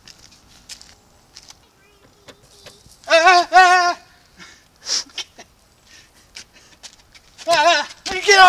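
A man's nervous, quavering whimper: two wavering, bleat-like vocal sounds about three seconds in and another starting near the end, with a sharp click about five seconds in.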